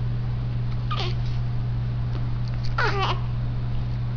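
Newborn baby giving two short, squeaky whimpers as she wakes, one about a second in and a longer one near the end, over a steady low hum.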